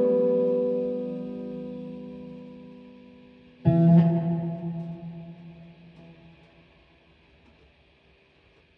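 Electric guitar played through an amplifier with effects: a held chord fading away, then a second chord struck about three and a half seconds in, left to ring and waver as it dies out.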